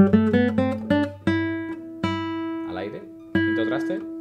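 Nylon-string classical guitar playing a quick run of single notes stepping upward through the C major scale, then three single notes plucked and left to ring, about a second apart.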